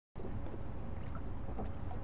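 Light water splashing and sloshing in a swimming pool as small dogs paddle at the edge of a float, over a steady low rumble.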